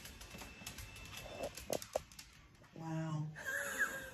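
Faint rustling with two short clicks, then a brief, low voice sound about three seconds in, followed by a fainter higher sound near the end.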